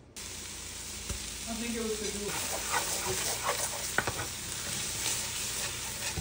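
Chopped onions, bell pepper and celery sizzling in a large aluminum pot as they sweat down, while a wooden spoon stirs and scrapes through them. The sizzle is steady, with scattered scrapes of the spoon.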